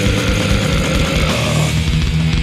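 Death metal recording in an instrumental passage: heavily distorted guitars and bass playing sustained low notes over rapid drumming, with no vocals.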